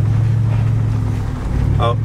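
Jeep Wrangler driving slowly along a dirt track, heard from inside the cab as a steady low drone of engine and road noise.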